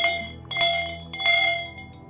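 A metal bell struck repeatedly in a slow, even beat, about two-thirds of a second apart, each stroke left ringing.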